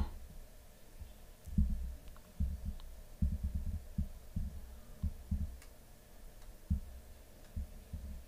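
Soft, irregular low thumps, like handling noise from a hand holding a small camera, over faint room hum.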